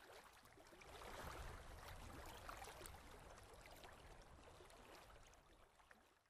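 Near silence: a very faint, even hiss with a light crackle, swelling about a second in and fading away toward the end.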